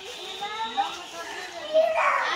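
Excited children's and adults' voices chattering over an unwrapped gift, with a louder exclamation near the end.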